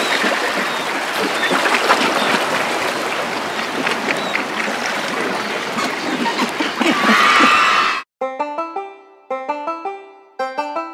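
A dense wash of lapping-water ambience with scattered clicks. About eight seconds in it cuts off abruptly, and a plucked-string melody starts, playing distinct stepped notes.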